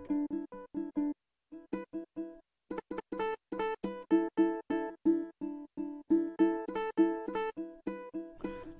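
Sampled ukulele from Big Fish Audio's Impulse library ('Ukulele Outro' patch), its slices triggered from a keyboard as short plucked notes that stop abruptly. There are two brief pauses in the first few seconds, then the notes come in a quick run of about three a second.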